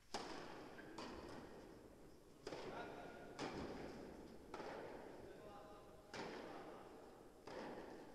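Tennis ball struck by rackets and bouncing, seven sharp pops about a second or more apart, each with a long echo from an indoor tennis hall.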